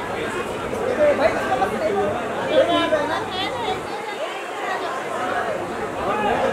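Several women's voices chattering over one another in a crowd, with no single clear speaker.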